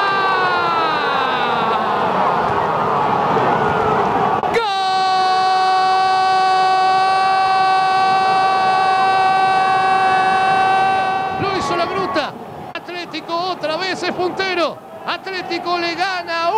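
A television football commentator's long, held goal cry, its pitch slowly falling as it fades about two seconds in. About four and a half seconds in, a single very steady held note starts abruptly and lasts about seven seconds; then excited shouted commentary picks up.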